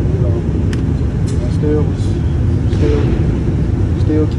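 Steady low rumble of an indoor shooting range's ventilation, with a few faint, sharp distant cracks and muffled voices over it.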